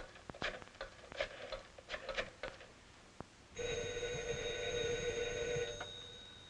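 A run of light clicks, then about three and a half seconds in a telephone bell rings once for about two seconds and stops.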